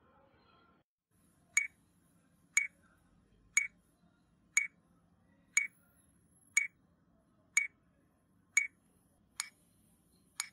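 Metronome ticking at a slow, steady beat of about one click per second (around 60 bpm), nine sharp, evenly matched clicks starting about a second and a half in.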